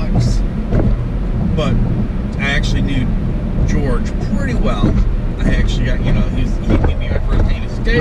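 Steady low road and engine rumble inside a car's cabin while driving, with people talking over it.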